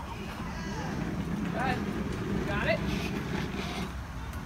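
A road vehicle passing, a low rumble that builds over the first couple of seconds and holds, with a few faint voices above it.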